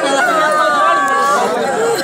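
A woman wailing in grief, with long drawn-out cries, among several other voices talking.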